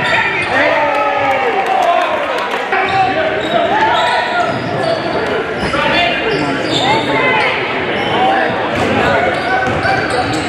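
Live basketball game sound in a gym: a ball dribbling on the hardwood court under overlapping voices of players and spectators, echoing in the hall.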